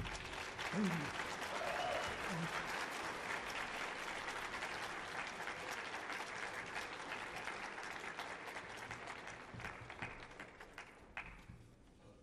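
Audience applauding at the end of a jazz piece, with a shout or two from the crowd in the first couple of seconds. The applause fades out near the end.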